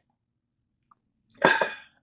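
A man's single short, breathy throat sound, a throat-clear or 'ahh', just after a sip of coffee, about a second and a half in.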